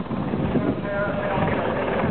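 Westland Sea King helicopter hovering at a distance, its rotor and engine drone blended with the chatter of nearby spectators.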